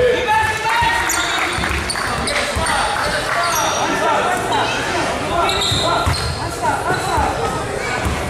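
A basketball bouncing on a court, with frequent short sneaker squeaks and voices echoing in a gym.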